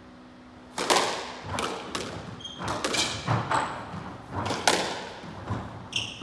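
Squash rally: sharp smacks of the rubber ball off rackets and the court walls, in quick succession from about a second in, ringing in the enclosed court. Brief squeaks of court shoes on the wooden floor come between the hits.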